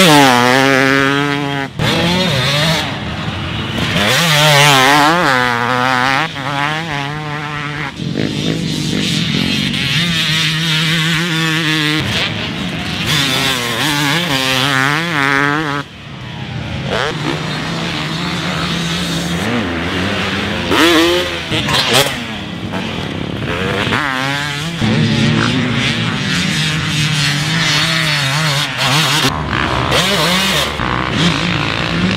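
Husqvarna TC300 300cc two-stroke motocross bike ridden hard, its engine revving up and falling back again and again as the throttle opens and closes. The sound cuts off suddenly a few times, most clearly about halfway through.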